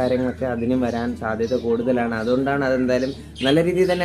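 A man talking in Malayalam, with domestic pigeons cooing in the background.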